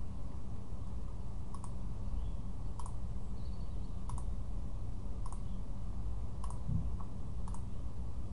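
Computer mouse clicking, about seven single clicks spaced roughly a second apart, over a steady low background hum.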